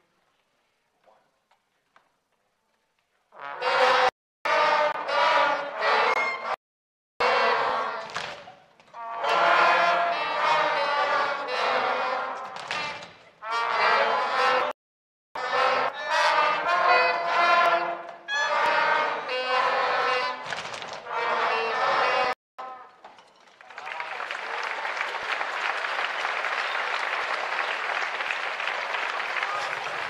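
Elementary-school concert band of woodwinds and brass playing in short phrases, starting a few seconds in, then audience applause for the last several seconds.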